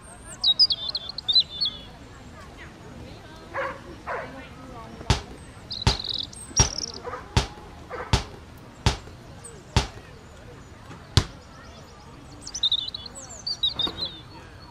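Basketball bouncing on a hard court, about eight sharp bounces under a second apart starting about five seconds in. Bursts of high sneaker squeaks come near the start, in the middle and near the end.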